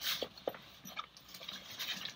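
Backpack fabric rustling with a few short, light clicks and knocks as disassembled trekking pole sections are pushed down into the side of the pack.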